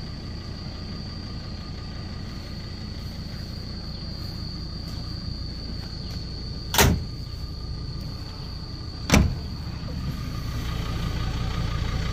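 Ford Ranger Wildtrak's 3.2-litre five-cylinder diesel idling with a steady low rumble, louder near the end, with two sharp knocks about seven and nine seconds in. A thin steady high whine runs underneath.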